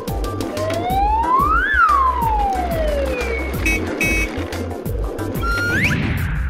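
Cartoon soundtrack: upbeat children's background music with a steady beat, over which a whistle-like sound effect glides up in pitch for about a second and then slides back down. A short, fast-rising whistle comes just before the end.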